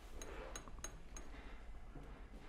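Four faint, light metallic clicks about a third of a second apart, each with a brief high ring, over a low steady hum.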